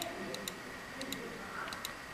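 Light clicks of laptop keyboard keys as numbers are typed, about six keystrokes falling roughly in pairs.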